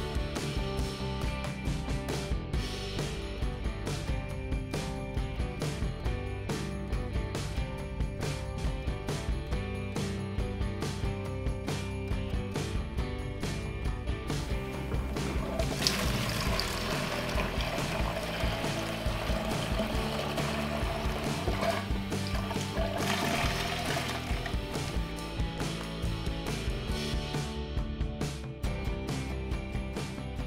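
Background music throughout. About halfway through, gasoline is poured from a plastic gas can into a glass jar for about six seconds, the fill tone rising slowly as the jar fills, followed by a short second pour.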